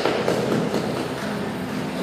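Handling noise from a handheld microphone being passed from one person to another, heard through the hall's PA as rustling and rubbing over a low hum.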